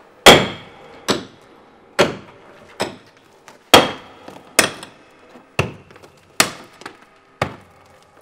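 A heavy hand tool striking stone again and again, about once a second: nine sharp blows, each with a short ringing tail.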